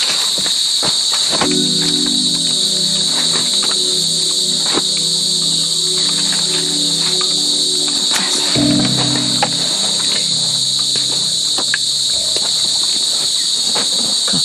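Dense chorus of night insects trilling steadily and high-pitched, with a low sustained drone beneath it that shifts to a lower pitch a little past the middle, and a few light rustles and clicks.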